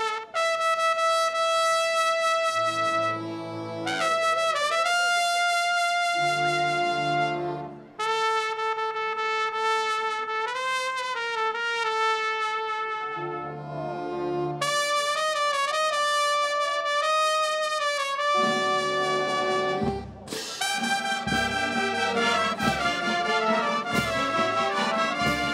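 Military brass band of trumpets, trombones and saxophones playing a slow piece in long held chords, pausing briefly between phrases. Near the end it turns livelier, with low thumps under the brass.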